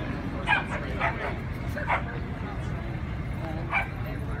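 A dog barking four short, sharp barks, spaced unevenly across the few seconds, over a steady murmur of background voices.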